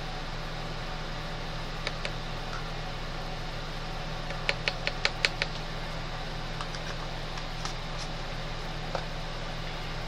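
Steady low hum in the room, with a few light clicks and a quick run of about six small taps around four and a half to five and a half seconds in. The taps come from handling the jar of pearl white powder pigment and a small plastic cup as the powder is tapped out.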